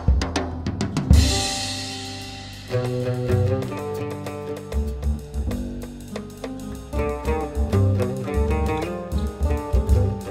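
Instrumental break in a jazz-tinged song, with no singing. A drum-kit fill with a cymbal crash about a second in rings away, and then bass and melody instruments come in with a rhythmic tune.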